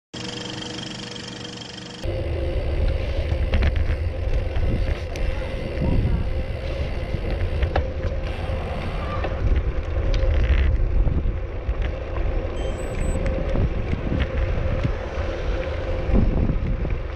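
Wind buffeting the microphone and road noise from a moving bicycle: a loud, steady low rumble with a constant hum and scattered clicks, starting abruptly about two seconds in after a quieter opening.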